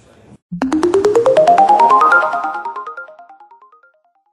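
Short electronic music sting for the People Matter TV logo: a fast run of short notes climbing steadily in pitch, starting abruptly about half a second in. The notes then echo away and fade out near the end.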